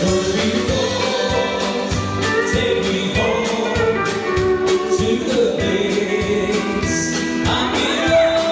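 Live band music with singing, keyboards and a steady drum beat.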